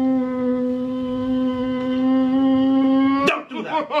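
A voice wailing in one long, steady held note, breaking a little past three seconds in into rapid, choppy sobs, about four a second.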